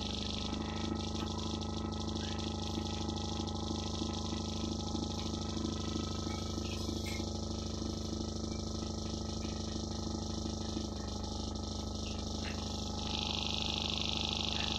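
Live experimental electronic music from a patch-cabled electronic setup: a dense, steady drone of layered hum tones with a rapid pulsing texture in the middle range. The pulsing stops near the end, and a bright hiss-like band comes in just before the end, making it louder.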